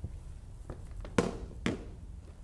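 Two sharp knocks a little under half a second apart, with fainter taps before them: a marker striking a whiteboard as writing begins.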